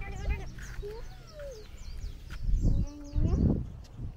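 An emu calling: two loud, low calls about two and a half seconds in, one quickly after the other. Small birds chirp faintly throughout.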